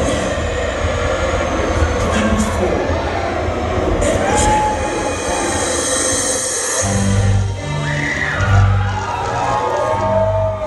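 Live metal band music heard from inside a concert crowd through a phone microphone: a dense wash of room and crowd noise, then about seven seconds in, deep bass notes held in long steps with gliding tones above them.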